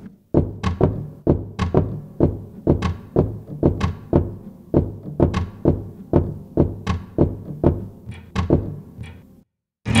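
Sampled knocking from the Piano Noir virtual instrument's percussive key switch, played from a keyboard: a run of about two dozen knocks, roughly three a second, each with a short low ringing tail, breaking off near the end.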